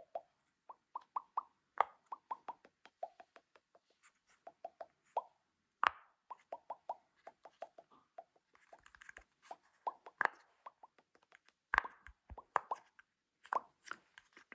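Round silicone pop-it fidget toy, its bubbles pushed through one after another by fingers: runs of short pops, several a second, each with a slight pitch, and a few louder, sharper pops among them.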